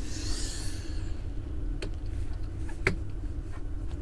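Handling of a small diecast model car on a tabletop: a faint scraping rustle in the first second, then two small clicks.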